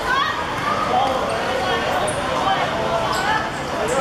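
Youngsters' voices shouting and calling out during a youth football game, several at once, with occasional thuds of the ball being kicked on a hard court.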